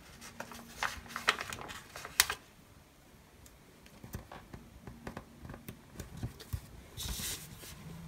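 Light ticks and taps of paper stickers being peeled from a sticker sheet and pressed onto a paper planner page, with a brief rustle about seven seconds in.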